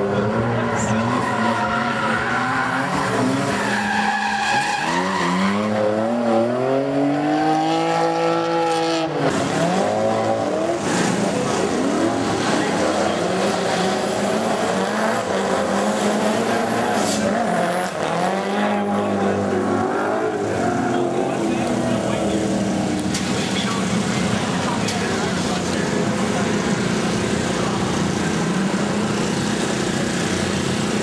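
Drift cars' engines revving hard, their pitch sweeping up and down as they slide past, with tyres squealing and skidding. One long rising rev peaks about nine seconds in, then drops away.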